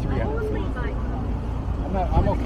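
Wind buffeting the microphone out of a moving truck's open window, a steady low rumble mixed with road noise, with faint talking over it.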